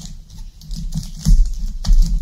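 Hands working sticky tape around a foil-wrapped cardboard tube on a wooden table: irregular clicks, crinkles and soft knocks, with a louder knock a little past a second in.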